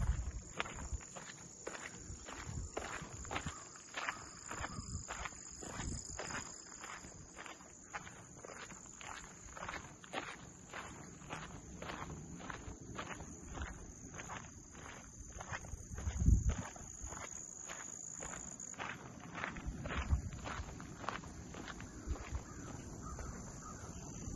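Footsteps on a dirt-and-gravel trail at a steady walking pace, about two steps a second, with a steady high-pitched insect buzz behind. A couple of low thumps come past the middle, the first the loudest.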